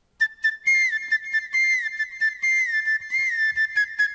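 A small bamboo flute (bansuri) playing a solo opening phrase. It comes in suddenly out of silence with a high, quick run of short notes, each turning with a little downward slide.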